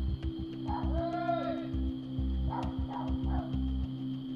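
Low background music with a steady pulsing bass. About a second in, a brief wailing call rises and falls over it, and a couple of fainter ones follow.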